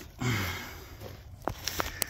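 A man's short, low hesitation sound, an "uhh" falling in pitch, followed by a few faint clicks and rustles of footsteps on dry pine-needle litter.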